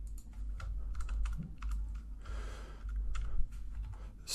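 Computer keyboard typing: a run of irregular key clicks as code is entered.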